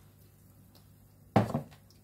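A single sudden knock of kitchenware, a pan or utensil struck or set down hard, about a second and a half in, dying away quickly.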